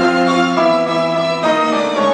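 Violin, cello and piano playing contemporary classical chamber music, holding sustained notes, with a new chord struck about one and a half seconds in.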